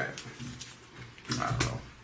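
Clear plastic comic book bags crinkling and clicking as bagged comics are shuffled and laid down on a table, with a sharp crackle at the start and a cluster of crinkles about a second and a half in. A short low grunt-like murmur from a person comes with the later crinkles.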